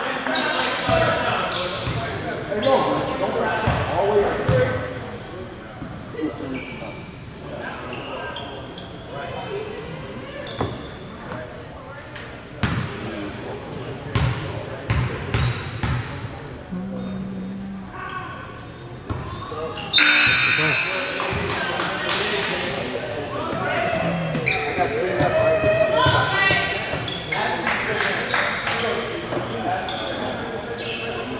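Basketball bouncing on a hardwood gym floor, with short sharp bounces and players' voices echoing in the gym.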